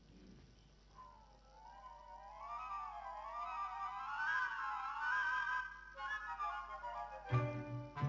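Instrumental introduction to a love song: after a moment of quiet, a single high melody line plays with vibrato, rising and falling. The fuller orchestra with bass comes in near the end.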